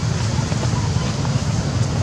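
Steady low rumble of outdoor background noise with no distinct event.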